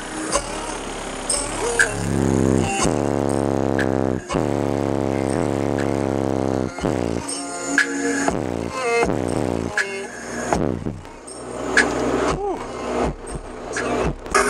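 Bass-heavy music playing through a car stereo's two 12-inch custom Sundown Audio ZV3 subwoofers, with deep bass notes that slide down in pitch.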